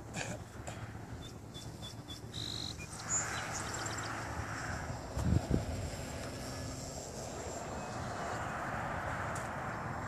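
Electric radio-controlled model airplane flying high overhead: its motor and propeller give a faint, steady drone that builds about three seconds in and holds. There are a few short high chirps early on and a soft thump about five seconds in.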